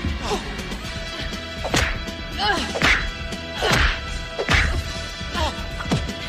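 Film fight sound effects: a run of punch and kick hits, about one a second, with the fighters' grunts and shouts between them, over a steady background music tone.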